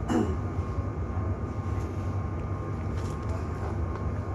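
Inside a GT6NU low-floor tram standing at a stop: a steady low hum from its running equipment, with a faint steady whine above it.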